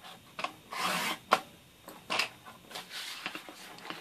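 Rotary paper trimmer's blade carriage sliding down its rail and cutting through cardstock, a series of short rasping scrapes with a sharp click about a second and a half in.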